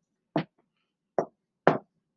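Marker tip tapping and stroking on a whiteboard as small circles are drawn, three short knocks.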